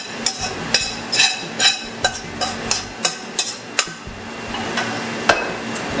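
A spatula scrapes and taps against a frying pan as stir-fried flat rice noodles are tipped out onto a plate, giving a quick run of sharp clinks for about four seconds. A single knock follows near the end as the pan is set back down on the stove.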